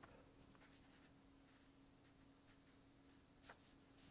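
Near silence with faint, brief scratchy strokes of a fine liner brush dabbing acrylic paint onto a painting board, one a little louder near the end, over a faint steady hum.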